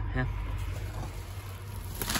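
Soft rustling of a cardboard tool box being handled, over a steady low hum.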